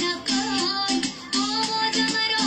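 A Pashto dance song playing: a high singing voice over instrumental accompaniment, in short repeated phrases.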